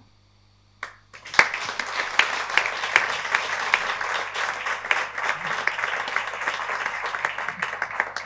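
Audience applauding, starting about a second in after a short silence.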